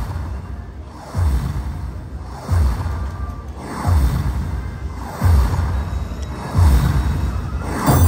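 Ultimate Fire Link Explosion slot machine playing its win-tally music while the bonus win meter counts up, with a deep, falling boom about every second and a third.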